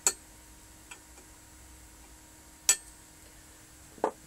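Wire cutters snipping through the X-ray tube head's filament output wires: two sharp snips, one right at the start and one a little under three seconds in, with a couple of faint ticks between.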